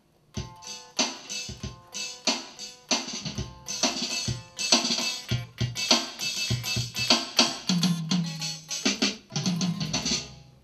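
Drum-kit sounds played from a synthesizer guitar: picked guitar notes trigger a fast run of drum hits, starting a moment in after a brief silence, mixed with a few pitched synth notes and a low held bass tone near the end.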